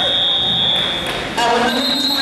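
Scoreboard buzzer sounding the end of the wrestling match: a high, steady tone about a second long, then a second, slightly higher tone starting about a second and a half in.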